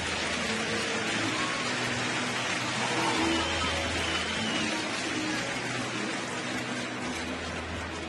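Steady hubbub of a large stadium crowd.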